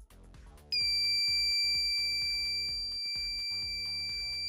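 Active magnetic buzzer held on a 9-volt battery, sounding one steady high-pitched tone that starts about a second in. Its built-in oscillator chip turns the battery's constant voltage into the tone. Background music with a steady beat plays underneath.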